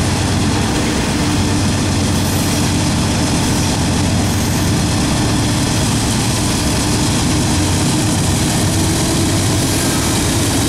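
Norfolk Southern mid-train distributed-power GE diesel locomotives, a Dash 9 and an AC44, working under power with a steady, heavy engine drone as they draw near. Under it, the steady rolling of loaded double-stack well cars on the rails.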